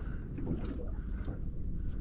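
Low, uneven wind rumble on the microphone aboard a small boat on open water.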